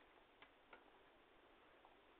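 Near silence with a few faint, sharp clicks, two within the first second and a weaker one near the end.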